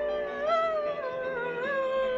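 A woman singing, holding long notes that waver and bend in pitch.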